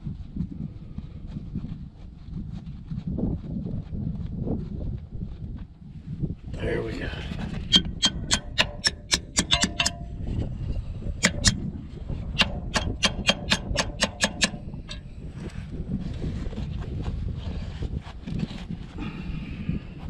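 A hammer taps a steel punch against the broken-off bolt in a dozer's track-frame roller mount. The light metallic strikes come in two quick runs of about four to five a second, midway through, each strike ringing briefly.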